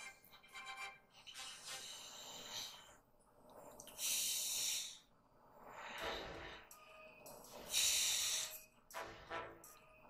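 A person's breaths hissing through a tracheostomy tube in several bursts a few seconds apart, the loudest about four and eight seconds in.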